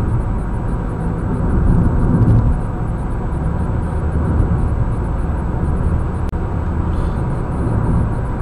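Steady road and engine noise of a car driving on a highway, heard inside the cabin as a continuous low rumble.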